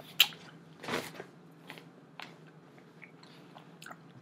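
Mouth noises of a person chewing blackberries: wet smacks and clicks, the sharpest about a quarter second in, with a short breathy rush about a second in. A faint steady hum lies underneath.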